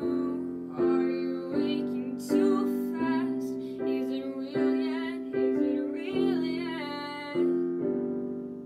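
Piano chords struck at a steady pace, about one every three-quarters of a second, each fading before the next, with a woman singing long, wavering notes over them.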